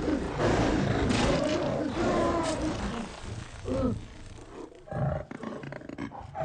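Film sound effect of a tiger snarling and roaring over and over as it mauls a man. The snarls are loudest in the first three seconds and grow fainter and broken after that.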